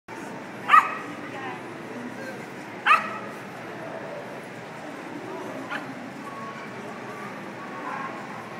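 A dog barking: two sharp barks about two seconds apart and a fainter one near six seconds in, over the steady murmur of a crowded hall.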